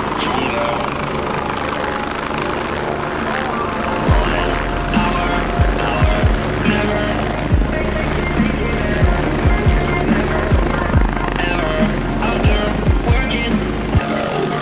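Electronic music with sustained synth tones, and heavy bass-drum hits that come in about four seconds in and repeat roughly every half second to a second. A hovering UH-72 Lakota helicopter's rotor and turbine run underneath the music.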